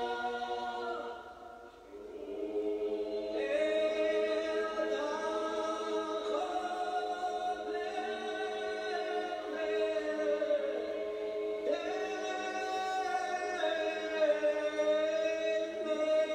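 An a cappella choir singing slow, long-held notes in chords, with a brief pause between phrases about two seconds in.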